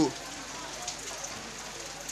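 A steady hiss of background noise with faint scattered ticks, after a shouted word cuts off as it begins.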